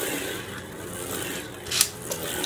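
A spinning Beyblade Burst top whirring and scraping across the plastic stadium floor, with one sharp click near the end.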